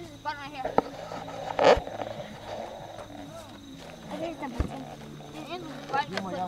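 Children's high-pitched voices calling and squealing in play, without clear words, with one loud shout about 1.7 s in and a couple of sharp knocks.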